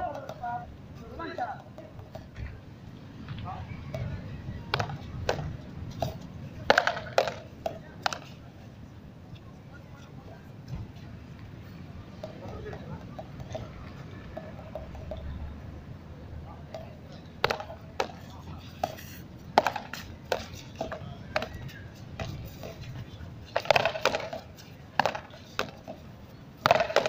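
Frontón rally: sharp knocks of a small ball struck by rackets and slapping off the concrete wall and court. The knocks come in runs of several cracks, with a quieter stretch near the middle.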